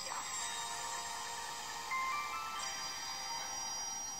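Radio news jingle: held electronic tones with a short run of rising notes about halfway through.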